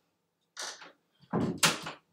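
Knocks and rattles of someone moving about in a small room: a light clatter about half a second in, then a louder, heavier knocking and rattling in the second half.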